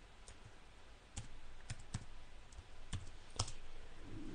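Computer keyboard being typed on: a handful of faint, separate key clicks at irregular spacing, most of them after the first second.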